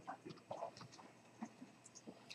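Quiet room tone with a few faint, scattered taps and clicks.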